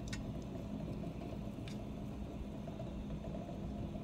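Steady low hum, with a few faint clicks of a metal spoon against a steel saucepan as an egg is lowered into the hot water.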